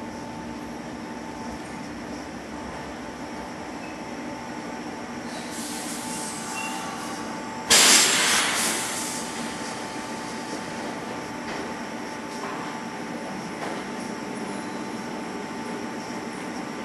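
Sanyo 3050-series electric train creeping into a terminal platform with a steady electrical hum. A high brake hiss rises about five seconds in. Near the middle comes a sudden loud rush of air that dies away over a second or so as the train comes to a stop.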